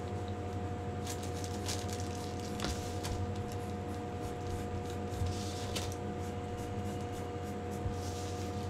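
Graphite pencil scratching on paper in short, irregular strokes as it traces curved lines over graphite transfer paper, pressing the design through to the sheet beneath. A steady low hum runs underneath.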